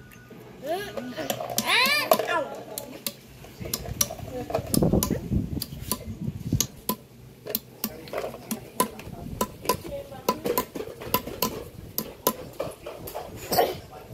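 Metal bottle cap being flattened on a wooden log with the back of a hatchet: a long run of sharp metallic taps, about two to three a second, with a brief voice-like call in the background about a second in.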